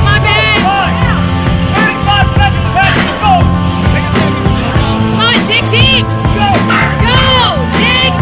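Loud rock music with a steady drum beat and a lead line that bends up and down in pitch.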